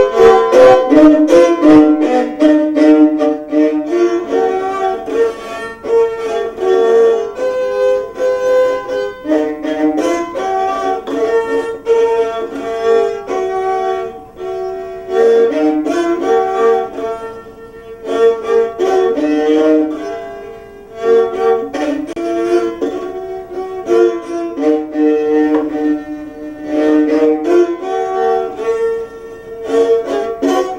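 Rabeca, the Brazilian folk fiddle, bowed in a tune of short repeating phrases, note after note, with brief pauses about two-thirds of the way through.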